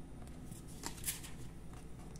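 Oracle cards being handled: a few short papery flicks and slides as one card is moved off the deck to show the next. The loudest comes a little after one second in.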